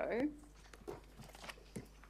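A woman's question trails off at the very start, then faint, scattered clicks and rustles of papers being handled close to a desk microphone in a quiet hearing room.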